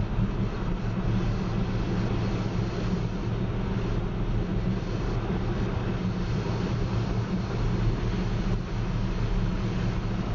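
Steady road noise inside a car's cabin as it cruises at highway speed: a constant low hum under an even hiss.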